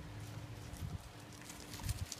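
Footsteps on a gravel path with handling noise from a hand-held camera: two soft thuds about a second apart and light clicks near the end, over a faint steady hum.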